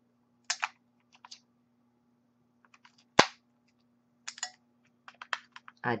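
Batteries clicking and rattling as they are taken out of and pushed back into the plastic battery compartment of a handheld electric callus remover, turned round after going in the wrong way. The clicks come scattered and in small clusters, with one sharp snap about three seconds in.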